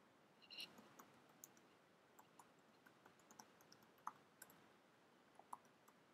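Faint, irregular clicks of keys being typed on a computer keyboard, with a slightly stronger click about half a second in.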